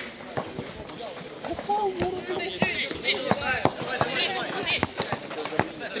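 Streetball game in play: a basketball bouncing and players' feet knocking on the court in an irregular patter, under voices calling out.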